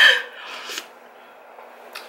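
A short laughing breath, then a quick slurp of soup from a spoon a little over half a second in; after that only a faint steady low hum.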